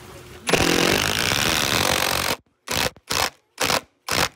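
Cordless impact driver with a T-40 bit driving a 4-inch Strong-Tie SDWS structural wood screw into a ledger board: one continuous run of about two seconds, then four short trigger bursts as the screw head is brought flush without overdriving.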